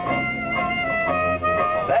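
Traditional jazz band playing, with clarinet, tuba and banjo, holding steady notes between sung lines. A male voice comes in with the next line of the song at the very end.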